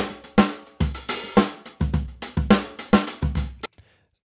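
Recorded drum-kit groove in 9/8, a two-bar loop of kick, snare, hi-hat and cymbal strokes played back in a steady syncopated pattern. The playback cuts off suddenly near the end.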